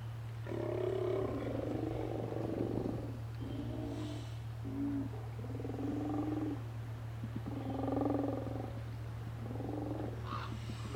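Steller sea lions calling: a run of about six low, rough calls, each from half a second to about two seconds long, over a steady low hum.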